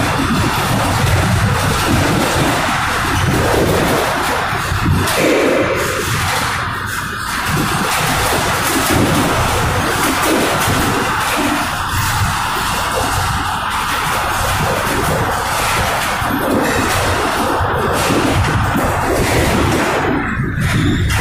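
Freight boxcar rolling over rough track: loud, continuous rattling and clanking of the car body and door, with wheel and rail noise.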